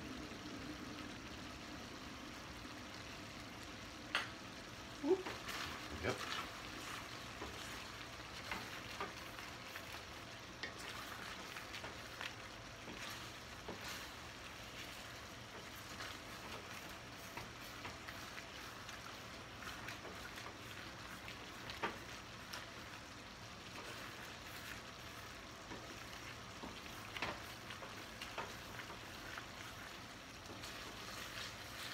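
Pasta, sausage and gravy sizzling steadily in a stainless steel skillet as the gravy cooks down, stirred with a wooden spatula, with a few sharp knocks of the spatula against the pan.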